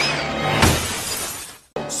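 A cartoon crash sound effect: a burst of noise across all pitches that swells and then fades away after about a second and a half, over music.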